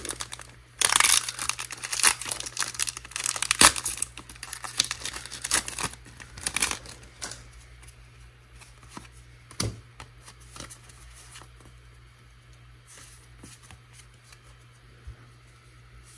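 A foil Pokémon trading-card booster pack being torn open and crinkled by hand, in a run of rustling, tearing bursts over the first several seconds. After that come quieter scattered light ticks as the cards are slid out and handled.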